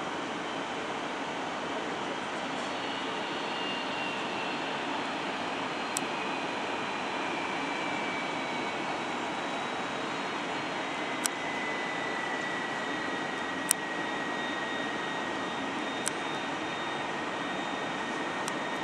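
Jet engines of a taxiing Airbus A330-200 at low thrust: a steady rush with a faint whine that slowly falls in pitch. A few sharp clicks stand out briefly over it.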